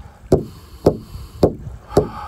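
Painted Northwest Coast frame drum struck with a padded beater in one steady, heartbeat-like beat: four strikes about half a second apart, each a deep thud that dies away quickly.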